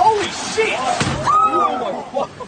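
Excited shouts and cries from onlookers, including one long rising-and-falling "oh" in the second half, with a sharp knock at the very start and another about a second in.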